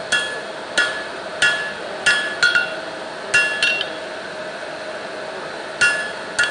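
Ball-peen hammer striking a red-hot steel bar on a cast steel anvil, forging the taper of a chisel. About eight ringing blows at an uneven pace, roughly one every two-thirds of a second, with a pause of about two seconds before the last one near the end.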